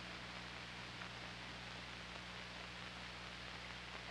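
Steady low-level hiss with a faint low hum, the background noise of an old 16mm film's soundtrack.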